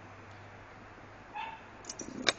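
Quiet room tone with a low steady hum, and one short high-pitched call about one and a half seconds in.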